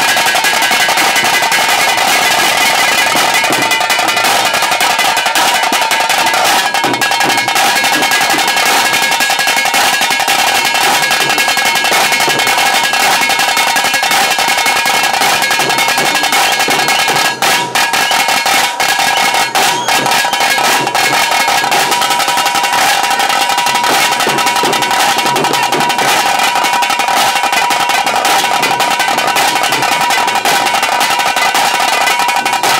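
Tiger-dance drum band of tase drums playing a loud, fast, continuous beat, with a few brief breaks in the middle.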